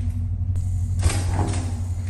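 Steady low hum of the ship's machinery, with a brief rush of noise about a second in as the wheelhouse door is pushed open.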